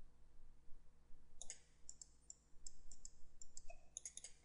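Computer mouse buttons clicking, a quick irregular run of sharp clicks starting about a second and a half in, over a faint steady hum.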